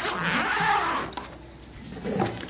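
Zipper on a fabric carry bag being pulled open, a rasping run that fades out about a second in.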